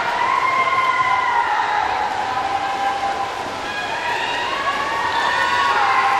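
Crowd at an indoor pool cheering on swimmers in a race: many overlapping long, high-pitched yells that rise and fall in pitch, echoing in the pool hall.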